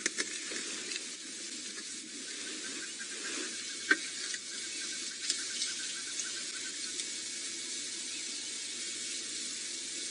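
Steady, even hiss of outdoor background ambience, with a few faint clicks, the clearest about four seconds in.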